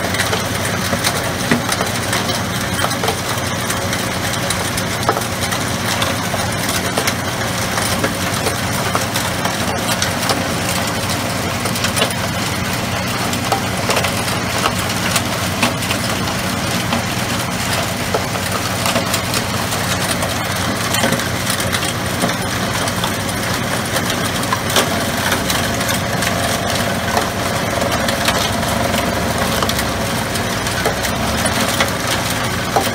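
A 24 by 16 hammer mill, driven by a 30 horsepower three-phase electric motor, running steadily while it grinds hard rock ore into a wet slurry: a dense, even crackle of small impacts over a steady low hum.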